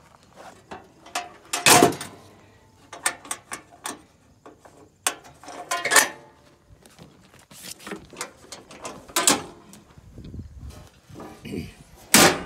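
Metal clicks, clanks and knocks from the steel linkage and sheet-metal body panels of a Simplicity SunRunner riding mower being moved by hand. The knocks come at irregular intervals, the loudest about two seconds and six seconds in.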